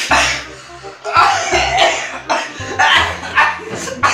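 A man coughing repeatedly in short, harsh bursts over background music.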